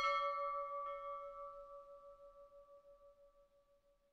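A struck bell chime ringing out and slowly dying away with a wavering shimmer, with a faint second tap about a second in. It is a sound effect for a subscribe-button animation.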